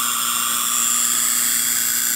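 Spark gap of a Tesla hairpin circuit firing continuously: a loud, steady, high-pitched buzzing hiss with a low hum underneath.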